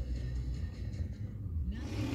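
Low, steady rumble with little higher-pitched sound.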